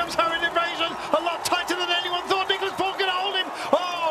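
A male television commentator speaking without a break.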